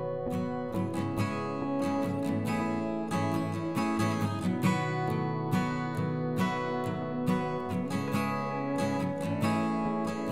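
Background music played on acoustic guitar, plucked and strummed at a steady pace.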